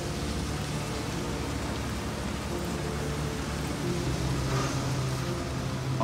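Steady rain on a car, heard from inside the cabin as an even hiss, with a low steady hum underneath.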